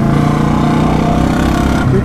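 Motorcycle engines running at a steady, low road speed: the exhaust of a Ducati V4 sportbike riding just ahead, heard over the rider's own Royal Enfield Bullet 350 single-cylinder engine. The note holds steady, with no revving.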